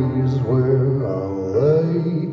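Live acoustic music: a low male voice holding a wordless sung melody in long notes that slide between pitches, over acoustic guitar.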